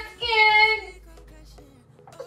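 A woman's singing voice holding a high, steady note that ends a little under a second in, leaving only faint sound.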